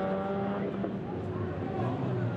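Peugeot 106 rally car's engine revving hard through a tight chicane, the pitch climbing, dropping sharply about half a second in, then rising and falling again with the throttle.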